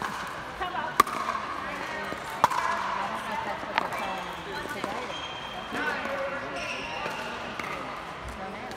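Pickleball paddles hitting a hard plastic ball: three sharp pops about a second and a half apart in the first half, with fainter hits later, over background voices.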